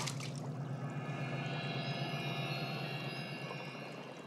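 A liquid splashes into a water-filled cauldron right at the start, followed by faint water sounds. Background score of steady, sustained high tones runs underneath.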